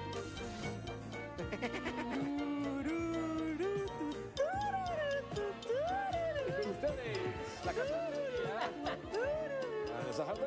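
A woman singing a wordless melody over background music. She holds notes that step upward, then sings repeated rising-and-falling swoops about once a second.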